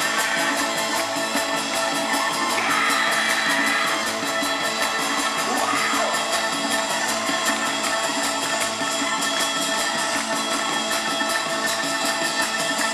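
Live band music played through a concert PA and heard from the audience seating. It runs steady and full, with a melodic line gliding in pitch a few seconds in.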